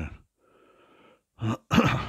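A man's voice breaks off, followed by a faint, short breath drawn in through a close headset microphone, and then talk resumes near the end.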